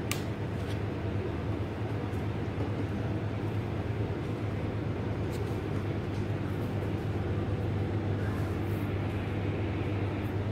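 Steady low machine hum with an even hiss, like a running appliance or fan, with a few faint soft taps from dough being rolled by hand on a plastic cutting board.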